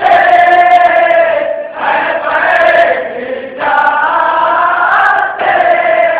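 A group of men chanting a nauha, a Shia lament, together in sung lines of under two seconds each, with short breaks between the lines.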